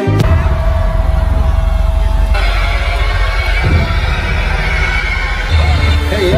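Live music from a festival stage's sound system, heard from inside the crowd, dominated by a heavy, steady bass throb. About two and a half seconds in, a held tone stops and brighter sounds come in over the bass.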